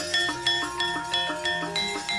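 Javanese gamelan metallophones, saron and bonang type, struck in a quick, even run of about five notes a second, each note ringing on under the next.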